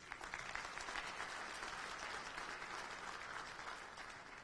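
Audience applause, fairly quiet and even, thinning out near the end.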